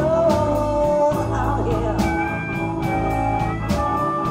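Electric blues band playing live: drum kit, bass guitar, electric guitar and keyboard keeping a stop-start riff with a steady beat. A sung line is held near the start, and sustained high notes, typical of a harmonica, follow in the second half.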